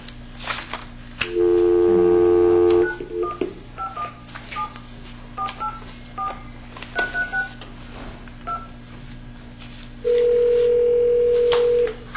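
Telephone on speaker placing a call: a dial tone for about a second and a half, then about a dozen touch-tone key presses dialing the number, then the ringback tone near the end as the far end rings.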